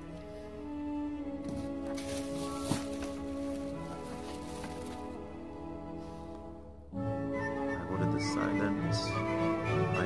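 Background music of long held chords, changing suddenly about seven seconds in to a louder, fuller passage.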